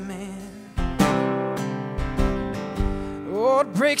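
Live worship band music: an acoustic guitar is strummed over held chords. Near the end, a man's singing voice slides upward into the next line.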